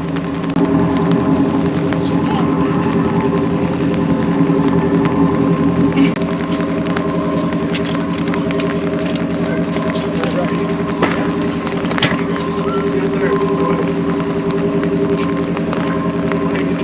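Charter fishing boat's engine idling at the dock: a steady, even hum with a few light knocks over it.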